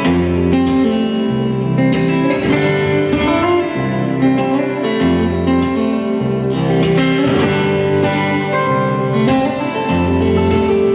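Solo steel-string acoustic guitar played fingerstyle: a bass line under a melody, with frequent sharp attacks on the notes.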